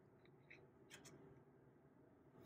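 Near silence with two or three faint clicks of a wooden number tile being slid into place against a wooden board, the clearest about a second in.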